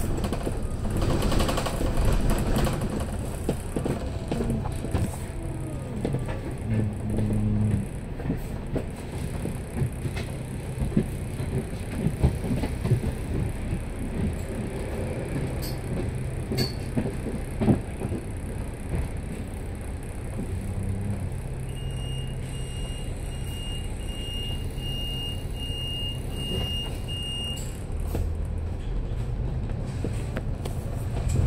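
A double-decker bus's engine and drivetrain running as it drives in town traffic, with body rattles and a few sharp knocks. Near the end comes a run of short, evenly spaced high beeps lasting about five seconds.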